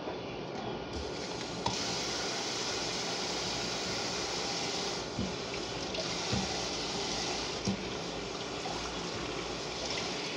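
Water running from a kitchen faucet into a sink in a steady stream, growing louder about two seconds in, with a few light knocks from hands moving in the basin.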